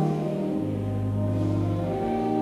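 Pipe organ playing a hymn in a church, with sustained chords over a low held pedal note that breaks off briefly and comes back.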